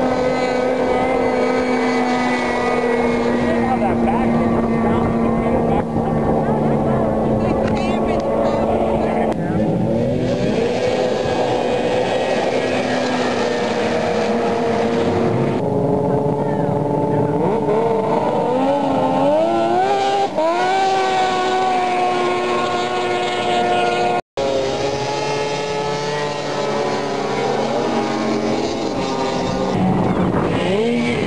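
Snowmobile engines running at a steady pitch, then revving up and down several times a little past the middle. The sound cuts out for an instant about two-thirds of the way through.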